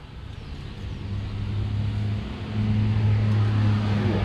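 Toshiba air-conditioner outdoor unit running: a steady low hum that grows louder over the first few seconds.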